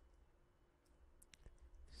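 Near silence with a few faint computer keyboard key clicks about a second in, from typing.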